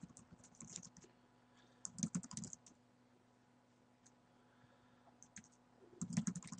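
Faint typing on a computer keyboard: three short runs of keystrokes, near the start, about two seconds in and near the end, as a username is entered at a login prompt.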